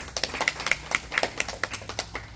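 A few people clapping: separate sharp claps at uneven spacing, about five or six a second.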